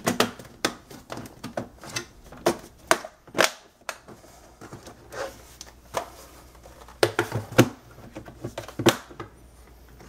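Plastic bottom case of an HP 17.3-inch laptop being pressed back on, its clips snapping into place, then the laptop being flipped over and set down on the desk. The result is a string of sharp clicks and knocks.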